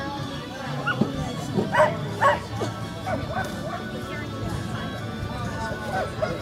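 A dog barking a few short times, over steady background music and voices.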